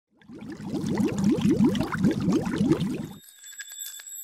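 Logo intro sound effect: a rapid run of short rising swoops, about three a second, for some three seconds. It stops suddenly into high, thin bell-like ringing tones broken by a few clicks.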